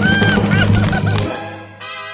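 Cartoon background music cuts off about a second in. It gives way to a high ringing ding sound effect and then a short creaking sound effect from the cracking ice, just before it breaks.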